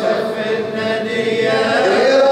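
Arabic devotional chanting: a continuous melodic vocal line with long held notes that bend slowly in pitch.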